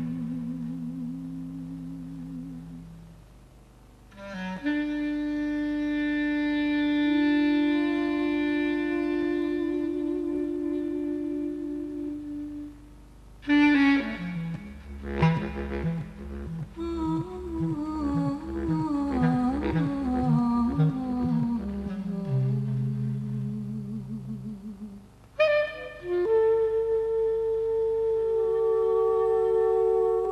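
Instrumental jazz passage on saxophone and synthesizer: sustained chords with a slowly moving reed line. In the middle a low note pulses about twice a second for several seconds. The sound is an off-air radio recording with some tape distortion.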